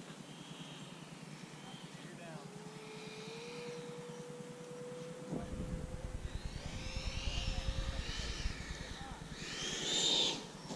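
Whine of the Freewing MiG-29 RC jet's twin 80 mm electric ducted fans on landing approach, growing louder as it comes in with gear and flaps down, loudest near the end as it touches down and passes close. A low rumble sets in suddenly about halfway.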